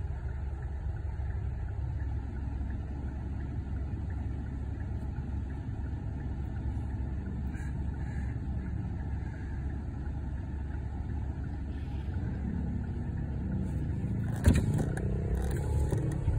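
Car engine heard from inside the cabin, first idling at a standstill as a steady low hum. About twelve seconds in it rises as the car pulls away, with a sharp knock a couple of seconds later and the noise growing louder toward the end.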